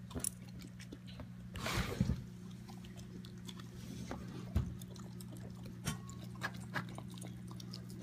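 German shepherd puppy eating soft homemade food from a plastic bowl: wet chewing and lapping with many small clicks of teeth and muzzle against the bowl, a louder rustling burst about two seconds in and a sharper knock about halfway through.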